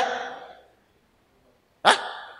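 A man's loud shouted word trailing off in the hall's echo, a second of quiet, then one short, sharp shouted syllable near the end, also echoing.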